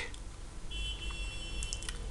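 A faint, high-pitched steady electronic tone lasting about a second, over a low background hum, with a few faint clicks near its end.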